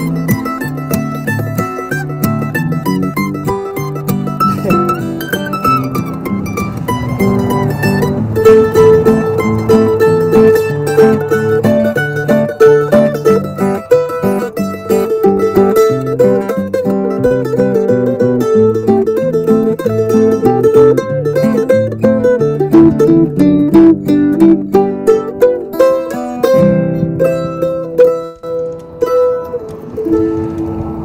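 Mandolin playing a melody over a strummed acoustic guitar: a two-piece acoustic duo with no singing.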